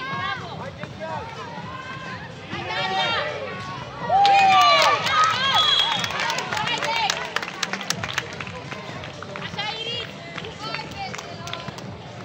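Girls' voices shouting and calling to one another during a basketball game, loudest about four seconds in. Quick sharp taps of running feet and the ball on the plastic court tiles come in between about four and eight seconds.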